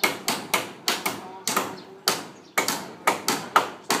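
Rapid, uneven series of sharp hammer blows on timber, about three or four a second, as the wooden frame of a stilt house is worked on. Faint voices underneath.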